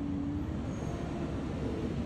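Steady low hum and rumble of a vehicle's engine running, with one even droning tone.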